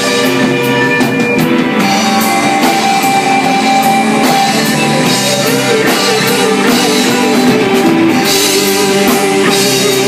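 Live rock band playing at a steady level: electric guitars and a drum kit with cymbals.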